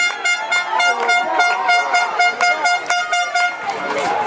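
A horn sounding one long steady tone for about three and a half seconds to celebrate a touchdown, with shouting voices underneath.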